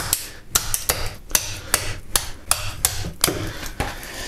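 Kitchen knife cracking through the thick rib bones of a large grass carp: a quick, irregular run of sharp clicks, about three a second.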